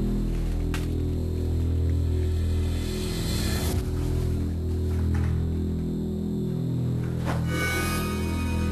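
Dark background music: a low sustained drone with a few whooshing swells, the largest building up about three seconds in.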